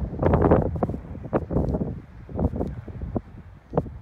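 Wind gusting across the microphone in irregular buffets, heaviest in the low rumble.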